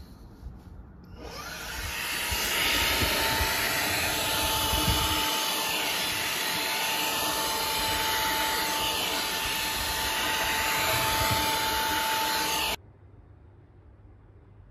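Xiaomi Mi Vacuum Cleaner Mini handheld vacuum running on its lowest setting: the motor's steady rushing hum with a single held tone. It starts about a second in, builds up over a second or so, and cuts off suddenly near the end.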